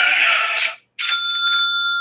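A played 'hallelujah' sound effect: a sustained sung chord that ends about three-quarters of a second in. About a second in, a bright bell-like ding follows, ringing with clear, steady tones for about a second.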